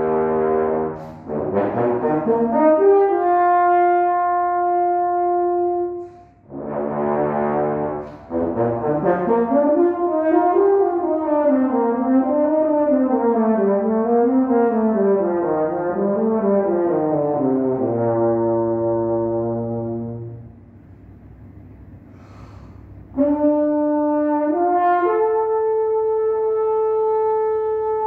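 Unaccompanied French horn playing solo: a few held notes, then a long legato passage whose pitch rises and falls in waves. Near the end it stops for about two and a half seconds before playing resumes.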